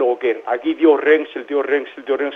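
Speech only: a woman talking steadily into a studio microphone.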